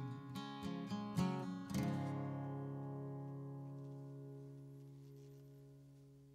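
Acoustic guitar ending a song: a few quick strums, then the final chord is left ringing and slowly fades away.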